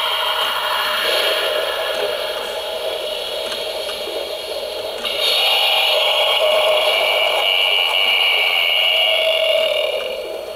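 Gemmy Crazy Eye Skull animatronic playing its recorded spooky sound track through its small built-in speaker, thin and tinny, with no bass. It steps up louder about halfway through.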